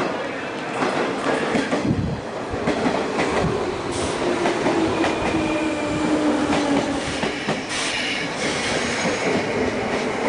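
Orange electric commuter train pulling in along a station platform and slowing: wheels clicking over the rail joints, and a whine that falls in pitch as it brakes.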